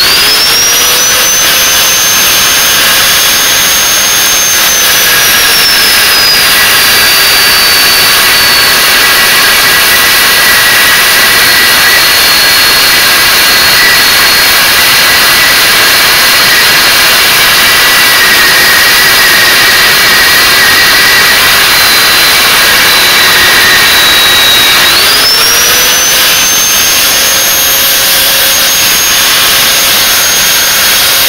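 Angle grinder with a cutting disc spinning up with a quick rising whine, then cutting into mild steel: its pitch drops and holds lower under load for most of the time. About five seconds before the end the pitch rises again as the disc comes off the cut and runs free.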